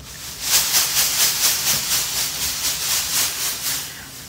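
Shredded white paper rustling and crackling as it is handled and tossed close to the microphone, a dense run of quick rustles that starts shortly in and eases off near the end.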